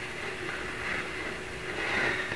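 Steady background noise with a faint, even hum, and no speech.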